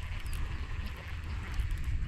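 Wind rumbling on the microphone, with a faint steady hiss of outdoor air.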